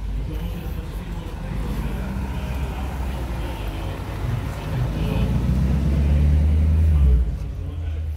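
A car engine running close by, a low steady drone that grows louder over a few seconds and drops off sharply about seven seconds in.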